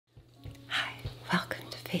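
A woman's soft, mostly whispered speech, a few breathy syllables, over a steady low hum.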